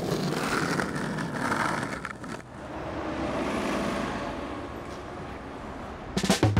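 Wheels rolling on pavement, a steady rushing noise that drops off about two seconds in, then swells and fades away again.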